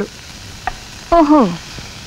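Food frying in a pan on a stove: a steady sizzle, with a short click about two-thirds of a second in.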